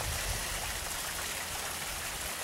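Water running steadily over a pump-fed backyard waterfall and through its rock-lined pond and creek: an even, continuous rush of flowing water.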